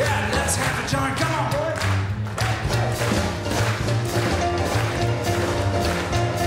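Traditional New Orleans jazz band playing live with a steady beat: banjo, piano, string bass and drums, with clarinet, trumpet and trombone.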